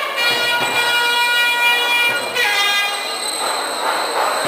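Nadaswaram, the South Indian double-reed temple wind instrument, playing long held, horn-like notes, moving to a new note a little over two seconds in.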